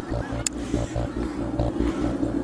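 Outdoor ambience: wind rumbling on the camera microphone, with faint voices in the background and a single short click about half a second in.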